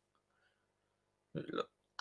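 A man's brief throat noise close to the microphone, lasting about a third of a second and coming a little past halfway, after a near-silent start.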